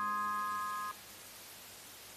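The final held chord of a karaoke backing track, a few steady tones fading slowly, then cut off sharply about a second in. A faint hiss is left after it.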